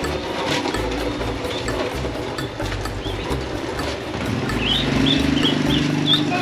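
Ducklings peeping, a quick run of short, high, rising chirps beginning past the middle, over a steady background beat.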